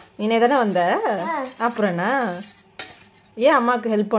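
A young child's voice in drawn-out, sing-song phrases, with one sharp click a little under three seconds in.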